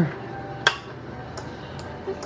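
A single sharp click about two-thirds of a second in as the breadboard trainer's power switch is flipped on, followed by two much fainter clicks.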